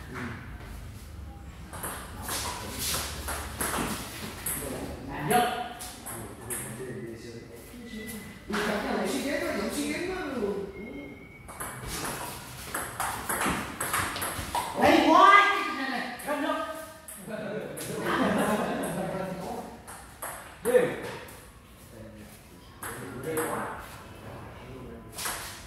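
Table tennis ball clicking off paddles and the table in doubles rallies, a run of sharp ticks with short gaps between points.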